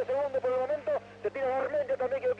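A radio race commentator talking continuously, with a short pause about a second in; no engine or other sound stands out over the voice.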